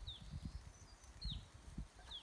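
A bird outdoors giving a short call that falls in pitch, twice, once near the start and again just past the middle, over an irregular low rumble.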